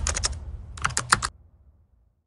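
Typing sound effect: two quick runs of sharp key clicks over a low rumble, dying away about a second and a half in.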